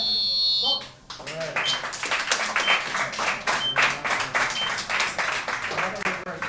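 Cage-side electronic buzzer sounding its steady high tone, cutting off about a second in, marking the end of the round and the bout. Clapping and shouting from the small crowd follow.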